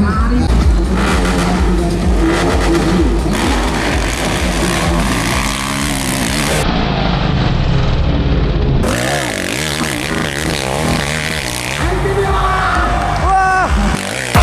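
Trail motorcycle engines revving under load on a steep hill climb, with spectators shouting over them. The sound changes abruptly a couple of times where clips are cut together.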